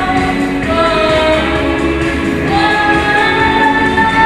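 A girl singing through a handheld microphone with instrumental accompaniment, holding a long sustained note through the second half.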